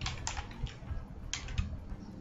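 Typing on a computer keyboard: a quick run of keystrokes near the start and a couple more about a second and a half in, over a low steady hum.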